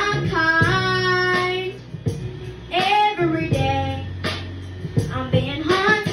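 A young boy singing into a handheld microphone, holding long notes that bend and slide between pitches, over a backing track of sustained low chords.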